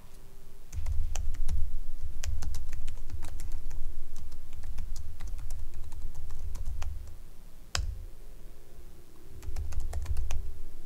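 Typing on a computer keyboard: a run of rapid keystrokes for about six seconds, a single louder key press near eight seconds as a command is entered, a short pause, then typing starts again near the end.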